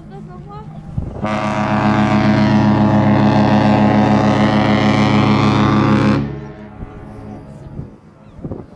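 Cruise ship AIDAdiva's horn sounding one long, steady blast of about five seconds, starting about a second in: the ship's departure signal.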